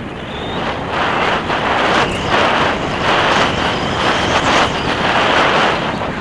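Mountain bike descending a dirt forest trail at speed, picked up by a bike- or rider-mounted action camera: a steady rush of wind noise and tyre roar on the dirt, with brief knocks and rattles over bumps. It gets louder about a second in.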